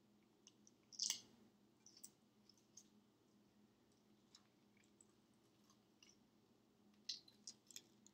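Faint crackling and clicking of a hard-boiled egg's shell being cracked and peeled off by hand, with a sharper crack about a second in and a few more near the end.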